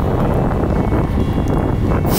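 Steady wind noise rumbling on the microphone of a camera mounted on a road bike riding at speed.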